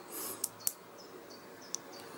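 Small neodymium magnet balls clicking together as a single ball is set into a magnetic-sphere structure: two faint, sharp clicks about a quarter second apart in the first second and a fainter one near the end.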